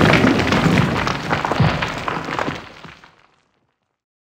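Logo sound effect of stone crumbling: a heavy crash tail with a dense clatter of small debris impacts, fading out a little past three seconds in.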